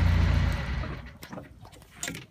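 A naturally aspirated Perkins marine diesel engine running with a steady low hum, which falls away within about the first second. Faint scattered clicks and knocks follow.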